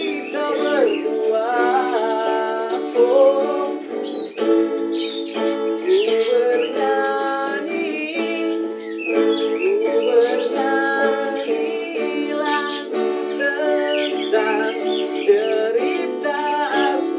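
Two acoustic guitars playing together, with a man's voice singing a gliding melody over them.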